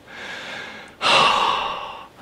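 A man breathing hard with excitement: a soft breath, then about a second in a louder, longer breath that trails off.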